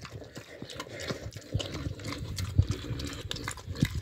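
Pig eating soaked bread from a trough: dense, irregular wet chewing, smacking and slurping, with a few louder low thumps as its snout works through the food.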